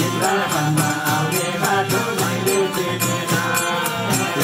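Hindu devotional kirtan: voices chanting over a harmonium's held chords, with a barrel drum and a jingling tambourine keeping a steady, quick beat.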